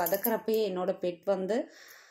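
A woman's voice speaking, stopping shortly before the end, where only a faint hiss remains.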